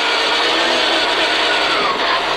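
Peugeot 306 rally car at speed on a gravel stage, heard inside the cabin: loud engine at high revs over a dense rush of tyre and gravel noise, with the engine note dropping in the second half as the revs come down.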